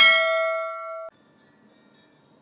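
Notification-bell sound effect: a bright bell ding with several steady tones that fades and then cuts off suddenly about a second in.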